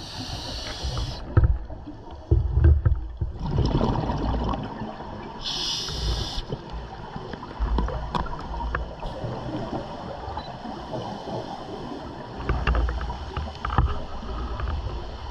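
Scuba diver breathing through a regulator underwater: a short hissing inhale at the start and again about six seconds in, each followed by low, gurgling exhaled bubbles. Another burst of bubbles comes near the end.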